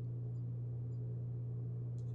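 A steady low electrical hum: one unchanging low tone with a faint hiss above it.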